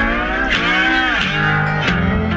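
Live rock band music with a guitar line sliding up and then back down in pitch over the band.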